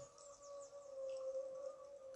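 A pause in speech: faint room tone with a faint, steady, high-pitched hum.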